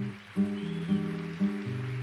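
Acoustic guitar music: a slow instrumental of low plucked chords, a new chord struck about every half second.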